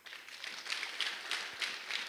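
Applause from a crowd: many people clapping in a steady, dense patter.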